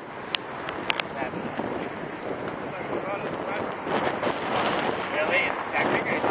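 Wind buffeting the microphone outdoors, growing louder about two-thirds of the way through, with a couple of sharp clicks in the first second.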